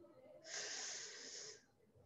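A man's audible breath in, a faint hissy inhale lasting about a second, starting about half a second in.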